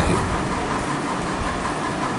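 Steady background noise: an even rushing hiss with no clear tone or rhythm.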